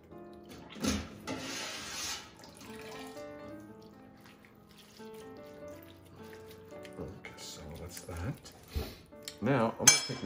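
Background music runs throughout. About a second in comes a knock, then a short rush of splashing liquid, and a voice starts near the end.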